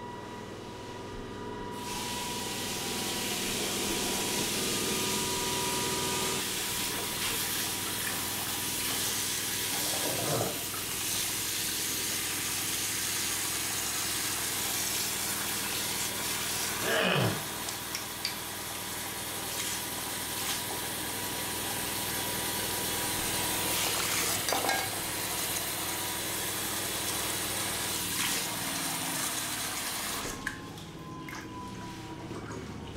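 Tap water running steadily into a bathroom sink, turned on about two seconds in and shut off near the end, with a few splashes as hands move in the stream.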